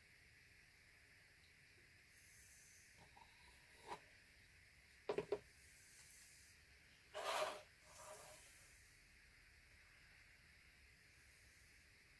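Near silence broken by brief handling noises as a plastic paint cup is lifted off the canvas: a soft tap about four seconds in, a quick cluster of sharp clicks about five seconds in, and a short rustling scrape a couple of seconds later.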